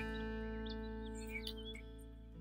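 Soft background music of sustained notes, held steady and fading a little, with a change of chord near the end.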